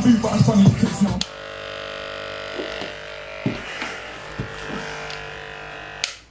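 A grime track with rapping plays over speakers and cuts off abruptly about a second in. Then an electric hair trimmer runs with a steady buzz, stopping at the very end.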